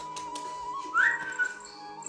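A hungry Pomeranian puppy whining for its food in one long, high, thin tone that jumps higher about a second in, over background music.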